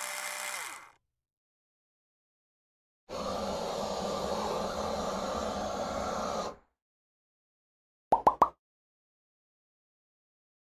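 Three added sound effects: a machine-like whirring buzz that cuts off about a second in, then a steady blowtorch hiss for about three and a half seconds, then three quick sharp pops of corn popping near the end.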